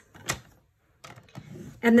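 Cardstock being handled on a paper trimmer: one sharp click shortly after the start, then faint rustling as the sheet is moved.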